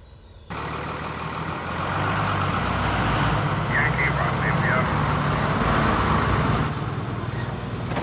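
A lorry's diesel engine running steadily. It cuts in abruptly about half a second in and grows louder over the next second or so.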